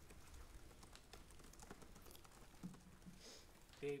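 Faint, irregular clicking of laptop keyboard typing in a hushed room, with a man's voice starting just before the end.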